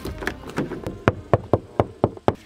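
Rapid, evenly spaced knocking by hand, about four knocks a second, to wake someone who is asleep.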